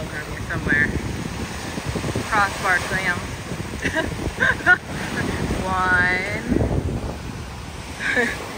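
Surf breaking and washing up the beach, with wind buffeting the microphone. Several short, indistinct vocal calls come through it.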